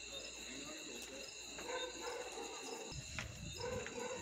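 Steady high-pitched insect chirring, like crickets, with faint voices in the background from about halfway in.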